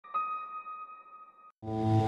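A single electronic chime-like tone rings and slowly fades, then is cut off about a second and a half in. After a brief gap, a sustained synthesizer chord with a deep bass begins as intro music.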